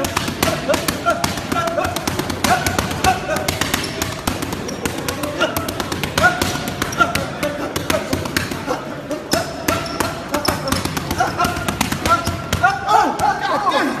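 Boxing gloves striking focus mitts in a fast, nonstop flurry: many sharp slaps in quick succession, with voices underneath and a man calling out near the end.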